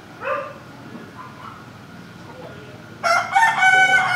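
A rooster crowing: one loud, long call with a clear pitch begins about three seconds in, after a brief sound near the start.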